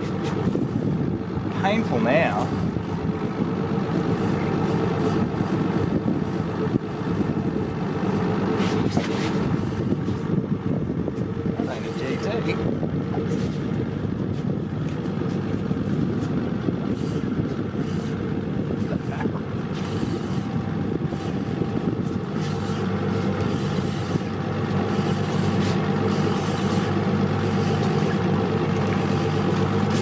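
Boat engine running steadily, a low, even hum.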